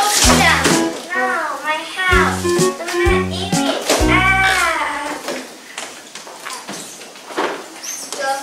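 Children's voices calling out and shouting over background music with a stepped bass line. The music and voices fade to a quieter stretch in the second half.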